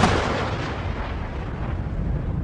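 A sudden loud boom right at the start, trailing into a heavy, sustained low rumble.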